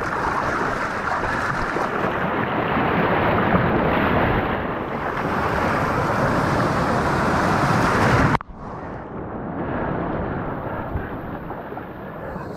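Loud rushing surf and moving water with wind on the microphone. About eight seconds in it cuts off suddenly to a quieter, duller water sound.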